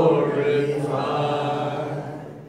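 A man singing one long held note through a microphone and PA, slowly fading near the end.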